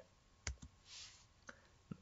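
Near silence broken by four faint, separate clicks from working a computer: two close together about half a second in, and two more in the second half. A brief soft hiss comes around the middle.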